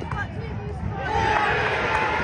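Football crowd of spectators shouting and calling out, swelling louder about a second in as a shot goes in on goal and the keeper dives.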